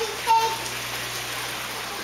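A short, high-pitched child's call about a third of a second in, over a steady hiss of background noise with a low hum.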